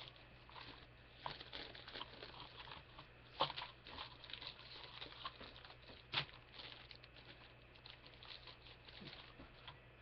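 Faint rustling and crinkling of plastic packaging as a plastic model kit sprue is handled, with two sharper clicks about three and a half and six seconds in.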